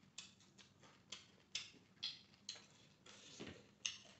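Close-miked chewing: faint, wet mouth clicks and smacks coming about twice a second as a mouthful of rice and fish fry is eaten by hand.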